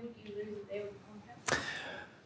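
A faint, quiet voice for the first second or so. Then, about a second and a half in, a short sharp rush of breath into a close headset microphone that fades quickly.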